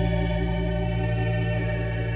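Wurlitzer theatre organ playing a slow light-classical melody, holding a sustained chord.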